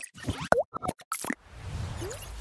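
Sound effects for an animated logo sting: a quick run of short cartoon-like plops, pops and blips, one with a bending pitch, then a low whooshing swell building in the last half second.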